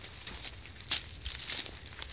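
Footsteps through dry grass and straw: irregular crunching and crackling, with the sharpest crunch about a second in.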